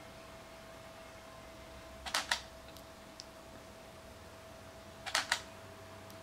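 Canon 80D DSLR shutter firing twice, about three seconds apart, as it takes time-lapse photos. Each release is a quick double click.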